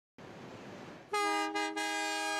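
Vintage diesel locomotive horn sounding a chord of several tones: two short blasts about a second in, then a long held blast. It follows a steady rumble of the passing train.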